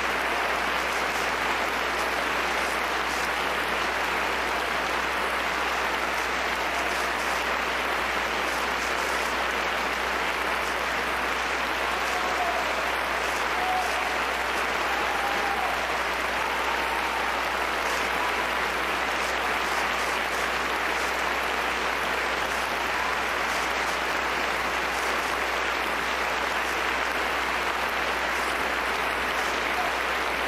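A concert audience applauding, a long steady round of clapping with no break.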